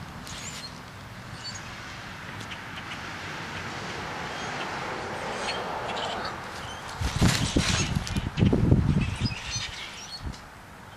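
A flock of blackbirds calling with scattered short high chirps, over the rising and fading hiss of passing traffic. Near the end, a couple of seconds of loud, low, rough noise covers them.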